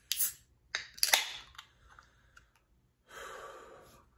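Wet lip smacks and mouth clicks of someone tasting beer, loudest about a second in. They are followed by a soft breath out near the end.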